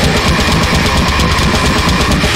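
Extreme metal band playing at full tilt: a drum kit driven by rapid, even kick-drum strokes under distorted bass and guitar, a dense unbroken wall of sound.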